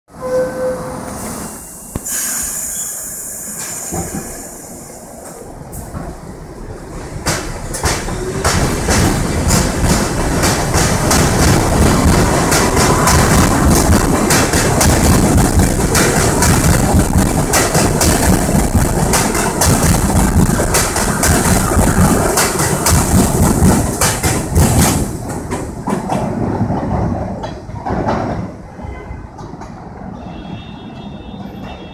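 R62A New York City subway train departing an elevated station. A short chime and the doors closing come in the first few seconds. The train then starts off and gathers speed, its wheels clicking rapidly over the rail joints, loudest midway and fading toward the end as it pulls away.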